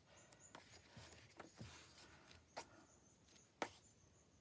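Quiet handling of a paper songbook: faint rustling and soft clicks as pages are turned, with one sharper page flick near the end.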